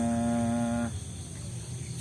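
A man's voice holding one long, steady chanted note, which stops about a second in, leaving a low steady hum.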